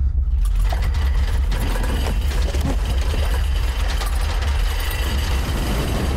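Disaster-film sound effect of a giant wave: a deep, steady rumble, joined about half a second in by a dense rushing roar of churning water that carries on.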